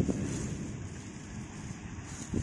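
Wind buffeting the microphone as a low, crackly rumble that eases off after the first second, with light rustling of a plastic bag being handled.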